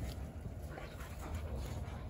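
Faint sounds of dogs moving about in the yard over a steady low rumble.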